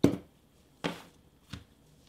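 Clear plastic set square and ruler being set down and handled on tracing paper over a table: three short knocks, the first the loudest and the last the faintest.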